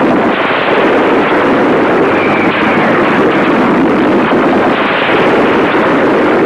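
Loud, continuous rushing noise from a film sound effect, with no distinct separate shots or strikes; music breaks in near the end.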